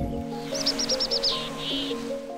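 A bird chirping: a rapid run of high chirps about half a second in, then a short buzzy trill near the end, over soft sustained background music.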